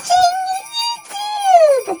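High-pitched, pitch-shifted cartoon character voice drawing out words in a sing-song way, its pitch sliding down in one long fall near the end.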